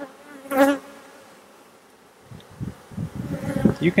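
Honey bees buzzing over an open hive, with one louder, wavering buzz about half a second in and a faint steady hum after it. Low rumbling noise comes in the second half.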